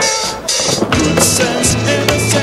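Skateboard wheels rolling on concrete, with a few sharp knocks of the board, under a loud music soundtrack.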